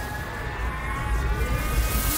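Engine drone: a steady whine slowly rising in pitch over a low rumble.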